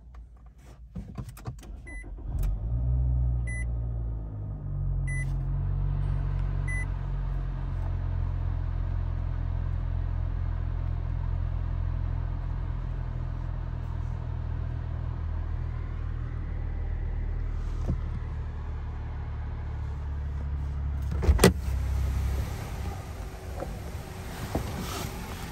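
Nissan Altima 2.5L four-cylinder engine starting at push-button start: a few clicks, then it catches about two and a half seconds in, flares briefly and settles into a steady idle. A few evenly spaced soft chimes sound early on, and a single loud click comes near the end.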